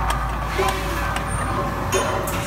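Chicken nugget counting and tray-filling machine with its conveyor running: a steady low machine hum with a few light clicks.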